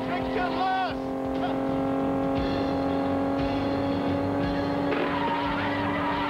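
Car engine running under a music score, with a voice calling out briefly at the start.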